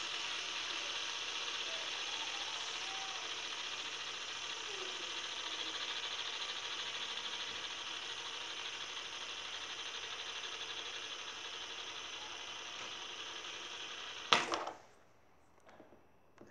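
Fidget spinner spinning flat on a table, its ball bearing giving a steady whir that slowly fades. About fourteen seconds in, a sharp knock cuts it off.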